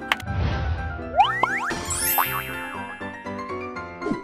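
Playful, cartoon-style outro jingle: a whooshing swell at the start, then bouncy music with quick rising slide-whistle-like 'boing' effects.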